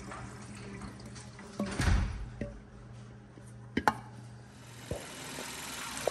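Liqui Moly engine flush glugging as it pours from its can into the engine's oil filler neck, with a louder gurgling surge about two seconds in. A few sharp clicks follow in the second half.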